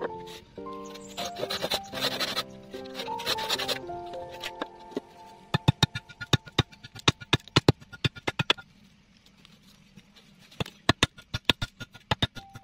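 Background music, then a quick series of sharp chops: a long machete-like knife blade striking a wooden carving blank and splitting off chips, about four strokes a second. The chopping comes in two runs, one in the middle and one near the end.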